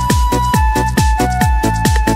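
Loud electronic dance music with a driving kick drum, about four beats a second, under a held synth melody.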